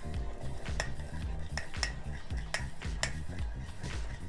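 A metal utensil stirring thick ketchup-based sauce in a ceramic bowl, clinking against the bowl's sides in repeated, irregular clicks.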